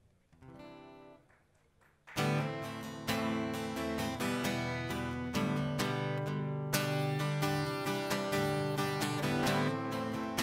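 A live pop-rock band comes in suddenly about two seconds in, led by a strummed acoustic guitar over bass, after a faint held note at the start. The music then plays on steadily.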